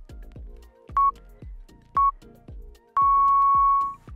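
Countdown timer beeping: two short beeps a second apart, then one long beep at the same pitch lasting about a second as the count reaches zero. Background music with a steady beat plays under it.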